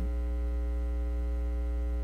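Loud, steady electrical mains hum: a low drone with a ladder of higher buzzing overtones, unchanging throughout.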